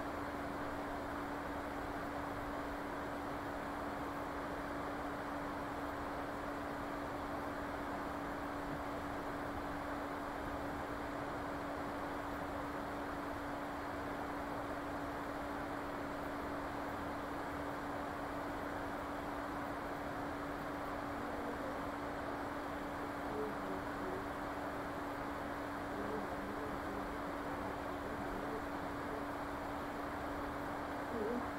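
Steady background hiss with a constant low hum running under it, unchanging throughout; a few faint, brief sounds come near the end.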